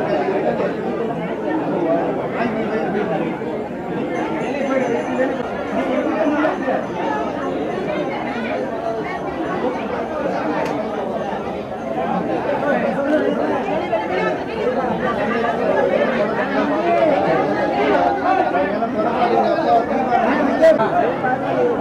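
Overlapping chatter of many people talking at once, a steady hubbub with no one voice standing out.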